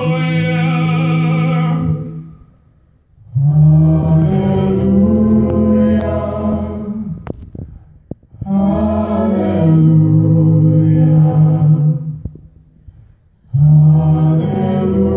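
A cappella vocal group singing wordless held chords, sustained for three to four seconds at a time with short breaks between phrases.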